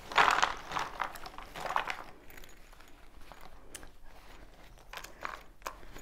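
Rustling and crinkling of a zippered canvas bag of cardboard jigsaw puzzle pieces being opened and tipped out into the box. It is loudest in the first two seconds, then fades to a few light clicks of pieces.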